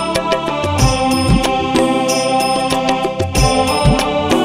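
Odia Krishna bhajan music: sustained instrumental tones over a repeating pattern of low drum strokes.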